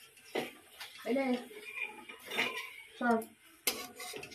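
Steel spatula clinking and scraping against a steel kadai while a paratha is turned in frying oil, with a sharp clank near the end. A few short spoken words come in between.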